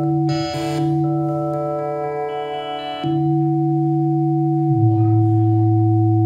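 8-bit synthesizer droning layered, held electronic tones that shift to new pitches about three seconds in and again near five seconds, with a short burst of noise about half a second in.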